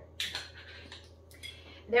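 A sharp metallic clatter followed by a few lighter clinks: a metal jigger and a glass bottle are handled and set down after a pour into a copper cocktail shaker.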